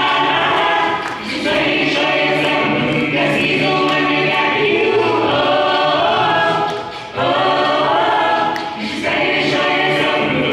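A gospel vocal group of men and women singing in harmony into microphones. Held chords come in phrases, with short dips between them.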